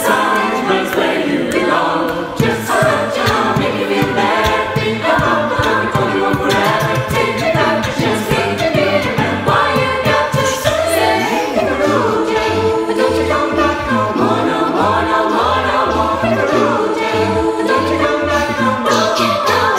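A cappella choir singing a pop arrangement in several-part harmony, over a low sung bass line and a steady percussive beat.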